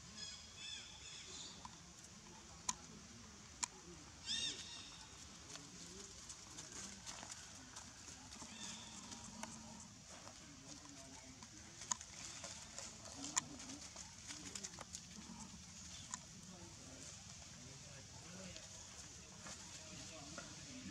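A few short, high squeaky animal calls over a faint outdoor background: a cluster right at the start and a louder one about four seconds in. Scattered sharp clicks are heard, two of them early and two more past the middle.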